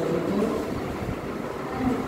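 Steady rumbling background noise, strongest in the low end, with no clear speech.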